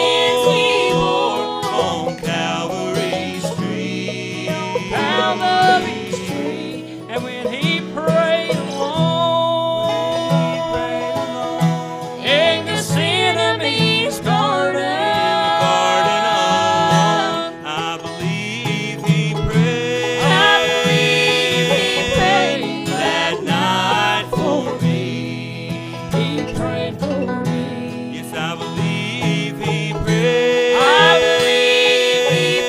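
Bluegrass gospel trio playing live: voices singing in harmony over mandolin, fiddle and electric bass, with long held sung notes.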